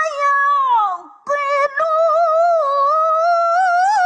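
A woman's voice reciting the Qur'an in the melodic mujawwad style, holding long high notes with wavering ornaments. About a second in, a phrase glides down and ends, followed by a brief breath. Then a new long sustained phrase begins and rises again near the end.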